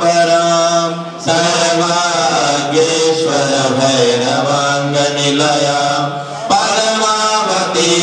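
Sanskrit mantra chanting in a sung, melodic recitation. The phrases are held long and broken by short breath pauses about a second in and again near six and a half seconds.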